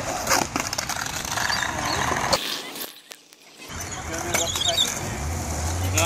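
Skateboard on a concrete skatepark: a sharp clack of the board near the start, then rolling wheels and scattered knocks, with a short near-silent gap about halfway through.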